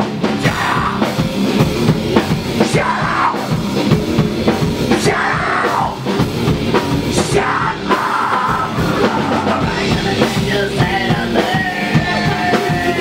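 Heavy rock band playing live with a loud drum kit and electric guitars.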